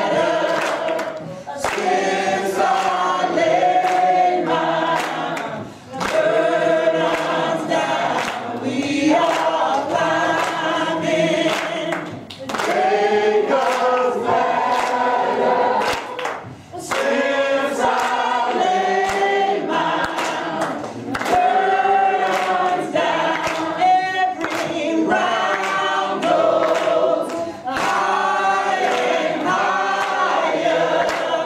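Church congregation singing a gospel song together, with hand claps in time.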